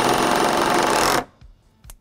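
Cordless Milwaukee impact driver hammering a screw through a steel hurricane tie into a wooden deck beam, its rapid impacts stopping abruptly about a second in as the screw seats.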